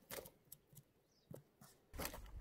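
Near silence with a few faint, short clicks.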